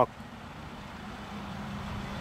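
Steady low background hum and hiss of outdoor ambience in a pause between speech, with a faint continuous low tone.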